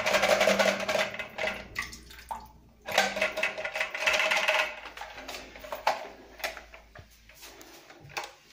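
A plastic Geberit cistern flush valve being twisted and pulled out of a toilet cistern, its parts scraping and clattering, with leftover water splashing off it. The noise comes in two spells in the first half, then only a few light knocks.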